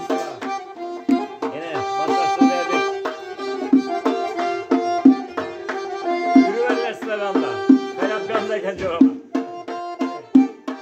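Uzbek folk music: a hand drum beats a quick, steady rhythm under held melody notes and gliding, ornamented melodic lines.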